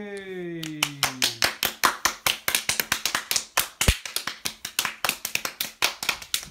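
A drawn-out cheer of "yay" falling in pitch, overlapping the start of quick, steady hand clapping, about five claps a second, that runs on to the end.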